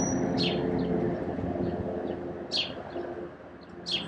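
Birds calling: about four short, sharp chirps that drop in pitch, over a lower, steadier sound underneath. The sound starts and stops abruptly.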